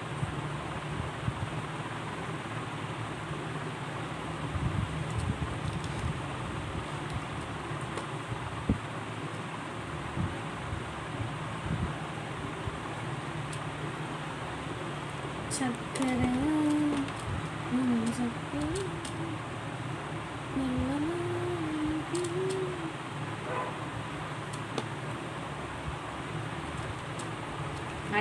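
Steady room noise from a running fan, with a faint, wavering voice in the middle of the stretch.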